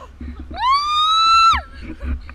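A parasail rider's high-pitched scream, held for about a second and then falling away, over the low rumble of wind on the microphone.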